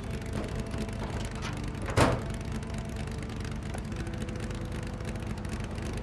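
Car engine idling steadily, with one loud slam from the car's bodywork about two seconds in.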